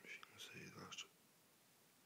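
A brief, faint whispered word in the first second, then near silence.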